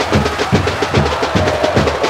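Music with fast, steady drumming, about four beats a second, under a held note.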